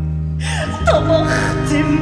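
Live stage music, an orchestra holding sustained notes over a steady bass line. About half a second in comes a sudden gasp-like breath with short downward-sliding sounds, and the music picks up again.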